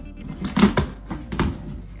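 Scissors cutting through packing tape on a cardboard box, with the cardboard flaps being pulled open: a few short, sharp scraping and rustling sounds, clustered about half a second in and again just past the middle.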